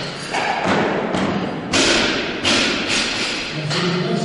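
About half a dozen heavy thumps at irregular intervals, each ringing on in the echo of a large sports hall.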